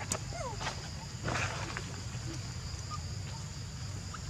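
Forest ambience: a steady high-pitched insect drone over a low rumble, with a couple of short falling chirps near the start and a brief rustle about a second and a half in.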